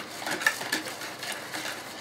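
Hand whisk stirring a liquid mixture of milk, oil, sugar, salt and yeast in a plastic bowl, with light scattered clicks and scraping as it knocks against the bowl.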